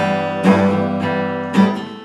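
Acoustic guitar being strummed, with fresh strums near the start, about half a second in and about a second and a half in, each chord left ringing and fading between them.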